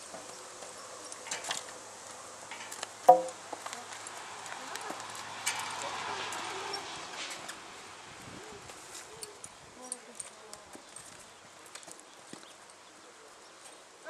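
A ridden horse walking on a dirt arena: scattered hoof steps and tack sounds, with one sharp, loud knock about three seconds in.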